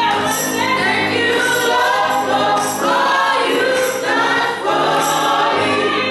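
Gospel praise team singing in harmony into microphones, with a sharp, bright percussion hit on the beat about every second and a quarter.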